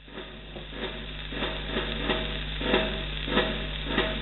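Lead-in groove of a 1930s Telefunken 78 rpm shellac record under the stylus: crackling surface noise that grows louder, a sharp click recurring about every two-thirds of a second, and a steady low hum, before the music starts.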